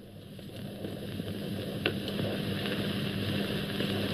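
Worn 1960s film soundtrack played over a video call: a steady hiss with a low hum, slowly growing louder, with one faint click about two seconds in.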